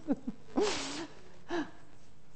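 A person's breathy, voiced exhalation, about half a second long, followed about a second later by a brief short vocal sound.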